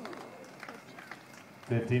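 Quiet outdoor ambience with a few faint taps, then a man's voice close to the microphone, loud and brief, near the end.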